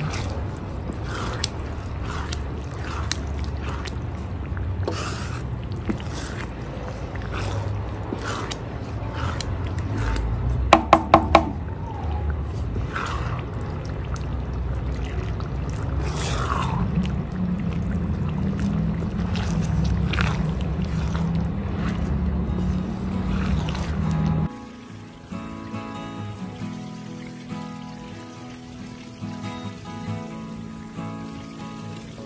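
Chopped onion and garlic frying in oil in a clay cazuela, stirred with a wooden spoon: sizzling with short scraping strokes, and a few quick knocks about eleven seconds in. About three-quarters of the way through, the frying gives way to background music.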